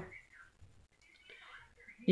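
Near silence in a pause between spoken words, with a faint breathy whisper-like sound about one and a half seconds in.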